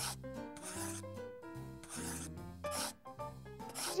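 Pen-on-paper scratching sound effect in three strokes, about a second in, about two seconds in and near the end, as letters are written out, over background music.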